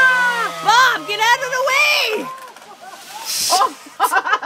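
People screaming and shrieking with high, wavering voices as a tree being felled comes down, over a low steady hum that stops a little under two seconds in. The voices die away about two seconds in, and a short burst of noise follows near the end.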